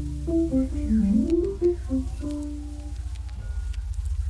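Background instrumental music: a melody of short notes stepping up and down over a low, sustained bass.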